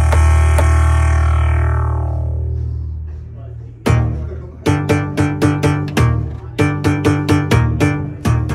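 Alesis Strike Pro electronic drum kit set to a pitched, melodic sound patch, heard through its amplified output. A long ringing tone fades out over the first three seconds, then from about four seconds in the pads are struck in a steady run of pitched notes, about three a second.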